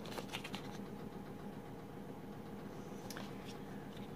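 Faint clicks and taps of a small cardboard cosmetics box being handled, a few near the start and one about three seconds in, over a low steady room hum.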